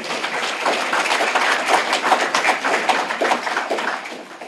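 Audience applauding, a dense patter of clapping that fades away near the end.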